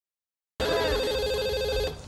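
A cordless telephone ringing: one fast-warbling ring starts about half a second in and cuts off just before the end.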